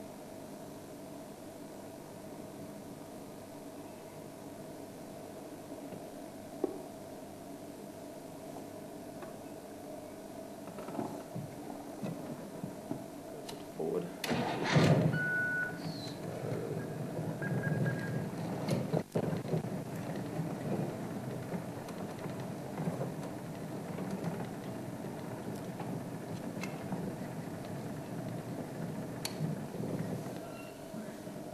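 A safari vehicle's engine idles, then starts up or revs about halfway through and runs on steadily.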